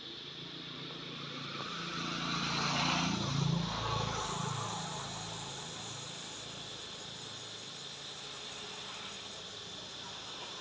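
A motor vehicle passes: its engine grows louder from about two seconds in, is loudest around the middle, then drops in pitch and fades. Insects buzz steadily and high-pitched underneath.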